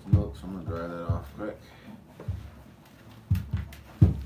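Hand-milking a cow: streams of milk squirting into a lidded pail as short, sharp hits roughly once a second, two of them in quick succession near the end.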